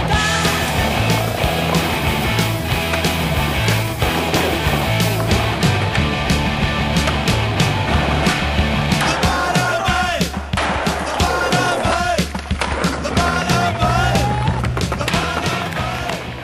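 Skateboard wheels rolling on concrete, with repeated sharp board pops, clacks and landing impacts, over a music track with a steady bass line.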